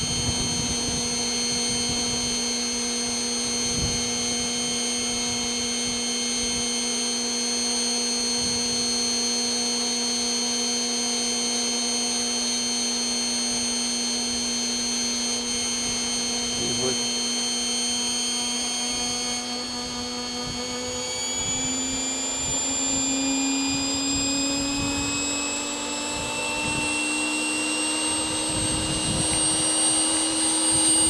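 Small electric motor running with a steady hum. Its pitch climbs slowly from about two-thirds of the way through.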